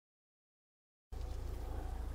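Digital silence, then about a second in, steady outdoor background noise cuts in: a low rumble with a faint hiss.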